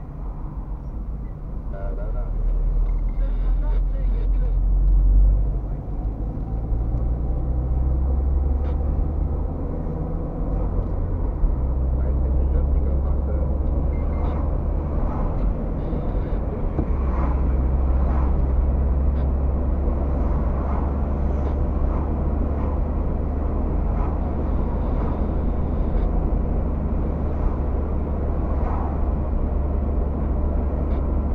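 Car interior engine and road noise picked up by a dashcam while driving: a steady deep rumble that swells for a few seconds near the start, then drops briefly as the car settles into cruising.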